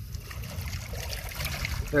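Steady wash of lake water at the shoreline.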